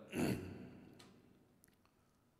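A man's short sigh into a close microphone, fading away within about a second, then quiet room tone.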